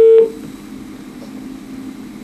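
Telephone ringing tone of an outgoing call heard over the studio line: a steady single-pitch tone that cuts off a fraction of a second in, then faint line hiss during the silent gap before the next ring.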